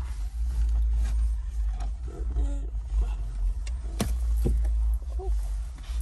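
Steady low rumble inside a car cabin, with rustling as someone settles onto a leather car seat over a cushion. There is a sharp click about four seconds in and a second one about half a second later.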